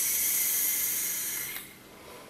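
A long drag on a vape through a Goblin rebuildable tank on a tube mod: a steady airy hiss of air pulled through the atomizer while the coil fires. It stops about one and a half seconds in, followed by a faint exhale.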